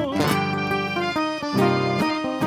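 Live gaúcho folk band playing an instrumental passage: a button accordion (gaita) carries the melody in short changing chords over a rhythmically strummed acoustic guitar (violão). A sung, wavering note ends just as the passage begins.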